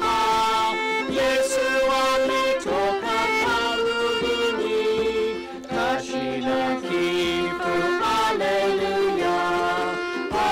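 Hymn tune played by a small acoustic ensemble of two violins, ukuleles and a djembe, with sustained violin notes and pitch slides over strummed chords, in an even unbroken stretch.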